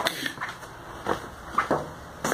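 Footsteps of a person walking on a hard floor: a few soft, uneven steps.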